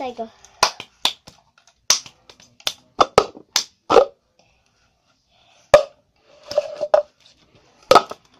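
A child playing the cup game: hand claps, taps on a table and a cup knocked down onto the surface. About a dozen sharp single claps and knocks come in an uneven rhythm, with a pause of about a second and a half past the middle.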